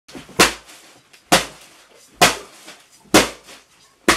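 Baseball bat beating fake clothes lying on a bed: four heavy whacks, evenly spaced a little under a second apart.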